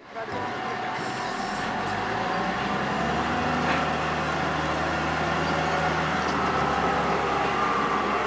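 Large Volvo wheel loader with a log grapple, its diesel engine running steadily as it drives with a load of logs. It grows slightly louder over the first few seconds.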